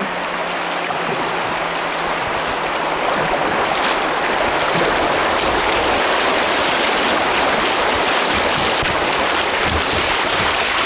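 Rushing, splashing water of a shallow river riffle around a kayak's bow as the kayak runs through it. It gets louder about three seconds in as the boat enters the broken water, then stays loud and steady.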